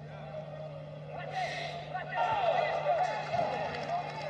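Faint voices over a steady low hum, with a short burst of hiss about a second and a half in.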